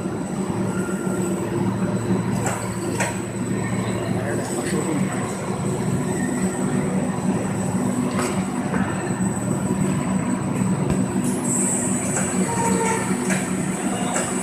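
Corrugated-board line stacker running: a steady low machine hum with a constant high whine over it, and scattered short knocks every second or few.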